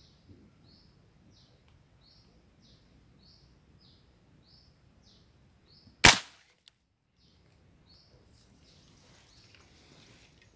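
A single sharp snap of a paser, a rubber-powered fish spear gun, fired at a fish about six seconds in, with a faint click just after.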